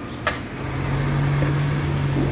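A car's engine running close by, a steady low drone that sets in about half a second in and grows louder, after a short knock near the start.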